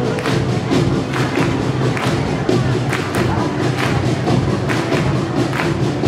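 Live rock band playing: a drum kit keeping a steady beat of about two hits a second under electric guitar and keyboard bass.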